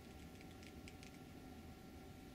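Near silence with a few faint light clicks in the first second or so, from a hot glue gun's trigger being squeezed as glue goes into a foam wing joint, over a steady faint room hum.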